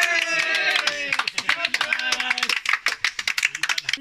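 Voices shouting in a long cheer that slowly falls in pitch, then a small group clapping in a quick, uneven patter for the rest of the time: players and spectators celebrating at a village cricket match.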